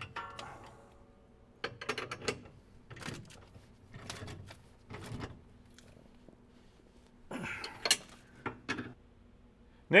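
Hand wrenches clicking and clinking on steel bolts while the front bolts of a gooseneck hitch are tightened: several short bursts of metallic clicks with quiet gaps between them, the longest burst about three-quarters of the way through.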